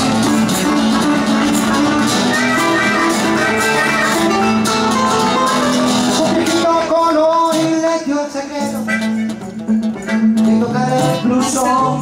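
Live blues band playing an instrumental passage, led by strummed and picked electro-acoustic guitar with bass and drums. The sound thins out for a few seconds near the end before the band fills back in.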